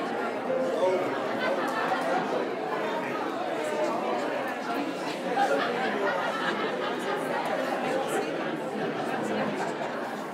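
Many people talking at once: indistinct chatter from a gathered congregation, with no single voice standing out.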